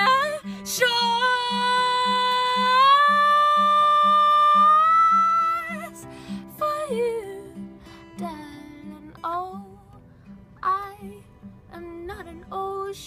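A woman singing to her own fingerpicked acoustic guitar. She holds one long note for about five seconds, stepping it up slightly partway through, then drops to quieter, shorter phrases. The guitar notes repeat steadily at about two a second.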